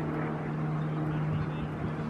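Steady low engine drone, a hum with a few overtones that shift slightly in pitch.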